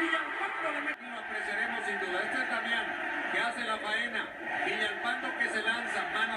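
A televised football match heard through a TV's speaker: dense voices of the stadium crowd and commentators mixed together, with a brief drop about a second in where the broadcast cuts.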